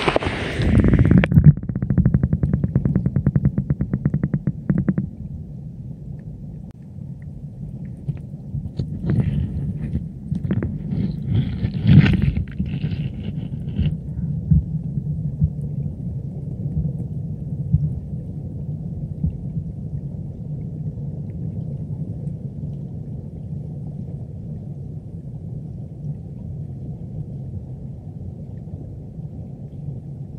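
Stream water heard through a camera's microphone held underwater: a muffled, steady low rumble. A fast run of clicks comes in the first few seconds, and a cluster of sharper knocks and rattles follows in the middle, the loudest about twelve seconds in.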